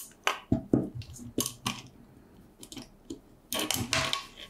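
Small metal parts of a microscope stand and its screws clicking and clinking as they are handled and fitted together by hand: a string of light ticks and knocks, with a louder clatter near the end.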